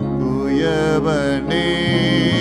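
Slow worship music: a man's voice singing with gliding pitch over steady held instrumental chords, the chord changing near the end.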